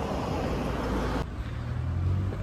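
Road traffic noise on a town street: a steady haze of vehicles, changing abruptly a little over a second in to a steady low engine-like hum.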